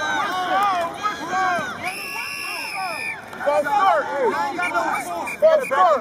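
Shouting voices of players, coaches and spectators at a youth football game, with a referee's whistle blown once, a steady held tone of about a second, some two seconds in.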